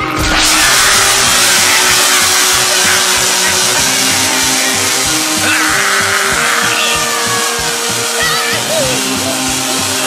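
Cartoon background music with held notes, under a loud rushing, wind-like whoosh of a magic blast sound effect that starts suddenly. High wavering cries come in briefly about seven to eight seconds in.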